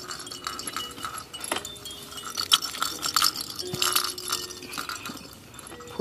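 A baby car seat's fabric canopy being handled and pulled down: cloth rustling with irregular small plastic clicks and knocks.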